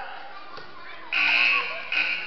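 Gymnasium scoreboard buzzer sounding once, about a second in, for just under a second.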